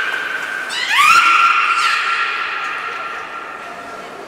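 Beluga whale calling in air: a long, steady, pitched call ends about a second in, and a second call slides up in pitch, then holds and fades out about two seconds later.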